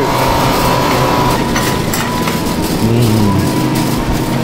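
Shopping cart rolling across a supermarket floor, a continuous rumble with a few sharp clicks and rattles about halfway through, over a steady tone in the store's background.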